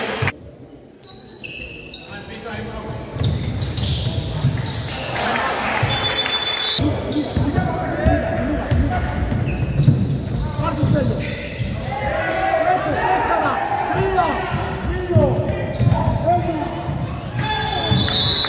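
Indoor basketball play on a wooden court: the ball bouncing and players' feet striking the floor, with shoes squeaking and indistinct shouting from players and spectators, all echoing in the large hall.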